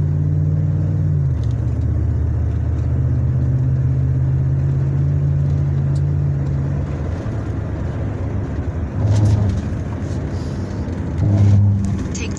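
A truck's engine droning steadily with road noise, heard inside the cab. The engine note drops about a second in and fades about seven seconds in as the truck slows toward a turn, and two brief louder low hums come near the end.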